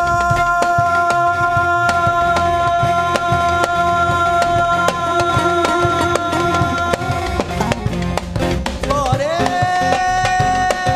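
Live band music: a male vocalist with drum kit, keyboard and electric bass. A long steady high note is held for most of the stretch, then slides up to a new held note near the end, over a steady drum beat.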